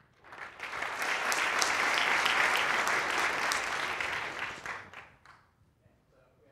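Audience applauding: the clapping builds within the first second, holds for about four seconds, then dies away near the end.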